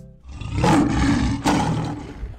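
Male lion roaring loudly: one long rough roar, with a second starting about a second and a half in.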